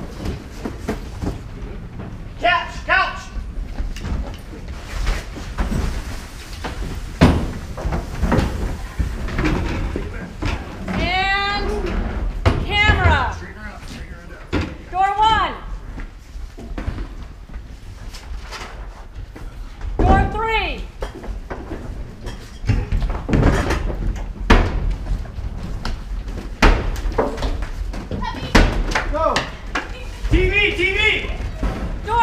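Furniture being shoved and dropped around a room: repeated knocks and thuds, with a door slamming, and short high wordless cries from a woman in between.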